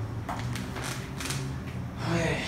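Three short clicks, about half a second apart, from working the computer's controls at the desk, over a steady low hum.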